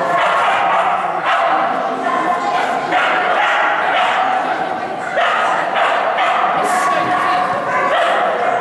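A dog barking and yipping in a rapid series of high barks, with a short pause about five seconds in.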